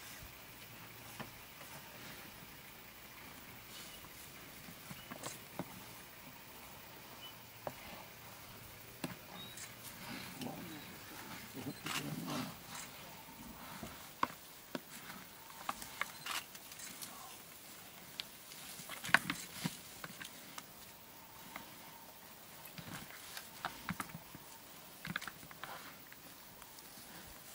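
Two African buffalo bulls fighting with their heads locked: scattered sharp knocks and clatter of horns and bodies clashing, the loudest a little past two-thirds through, with low grunting around the middle.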